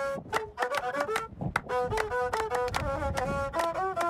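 A handmade Berber bowed fiddle playing a melody of held notes that step up and down in pitch, with a few people hand-clapping a steady beat of about three claps a second.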